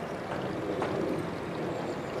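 Steady outdoor background noise: an even wash with no single clear source standing out.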